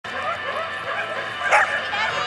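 Dogs barking and yipping in quick short yelps, with a louder, sharper yelp about one and a half seconds in.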